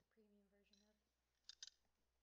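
A quiet room with a faint voice in the first second, then two short clicks close together about a second and a half in.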